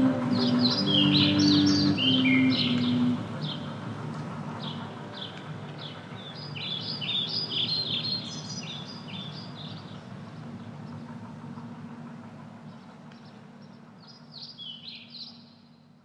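Birds chirping, in clusters of quick high calls, over a low steady hum, fading out near the end. The song's last held low chords ring on under the first chirps and stop about three seconds in.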